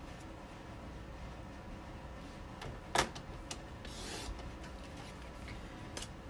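Paper trimmer cutting a piece of patterned paper: a short sliding swish ending in a sharp click about halfway through, then another brief swish about a second later, over a faint low hum.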